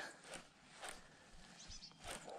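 Near silence, with a few faint soft ticks.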